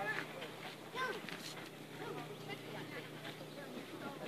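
Faint voices, a couple of short calls about a second in and again midway, over a steady low hum.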